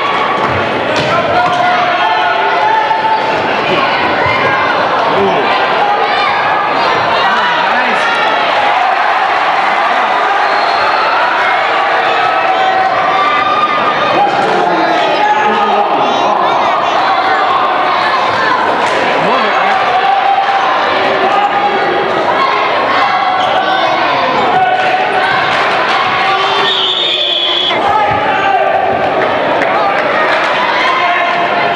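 Spectators chattering in a gymnasium during a basketball game, with a basketball bouncing on the hardwood floor now and then. A referee's whistle sounds briefly near the end.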